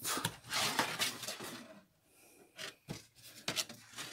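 Plastic DVD cases scraping and sliding against each other and the cardboard box as one is pulled out, followed by a few light plastic clicks.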